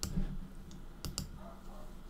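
A computer mouse clicking, a quick pair of clicks about a second in, as the on-screen flashcard is turned over.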